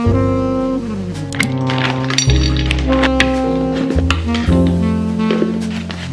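Instrumental background music with a jazzy feel: held melody notes over steady bass notes.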